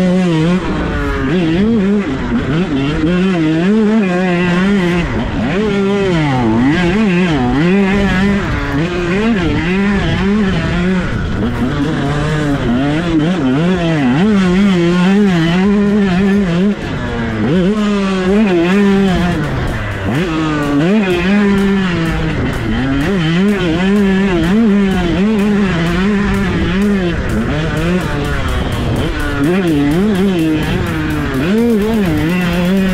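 KTM 125 SX single-cylinder two-stroke engine at full throttle, its pitch repeatedly climbing and dropping as the rider accelerates, shifts and backs off. There is a brief dip in level about 17 seconds in.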